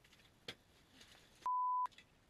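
A single short censor bleep, one pure steady tone lasting under half a second near the end, with the rest of the audio muted around it. A faint sharp click comes about a quarter of the way in.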